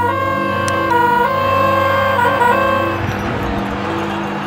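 A hand-held multi-trumpet fanfare horn blown in a tooting tune of held notes that step between pitches, stopping about three seconds in. After that comes the noise of a crowd.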